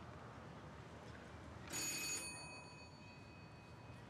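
A single bright metallic bell-like strike a little under two seconds in. Its tones ring on and fade over about two seconds against faint room noise.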